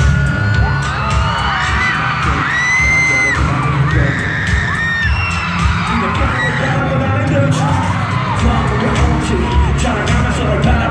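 Live pop music played loud over an arena sound system, with a heavy steady beat, and the audience screaming and cheering over it.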